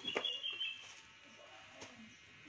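A short high-pitched warbling chirp over the first half-second or so, with a light click just after it starts and another near the end.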